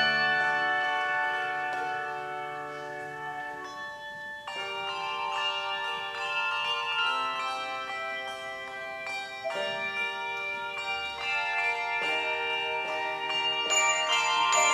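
Handbell choir ringing a slow piece: chords of many sustained, ringing bell tones that change every second or so. After a softer stretch, a fresh chord is struck about four and a half seconds in, and the ringing grows louder near the end.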